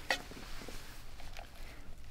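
A single short click as the Kowa telephoto lens module's mounting foot is seated in the slide rail of a digiscoping adapter, then faint handling noise.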